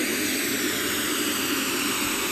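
Pink noise playing from two small full-range speakers fed the same signal, as one speaker is moved further back. This sets up comb filtering: the steady hiss takes on a hollow, swishing colour as its notches glide gradually lower in pitch.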